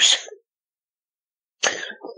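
The end of a spoken word, then about a second of dead silence, then a short, sharp breath noise from the woman speaking, just before she talks again.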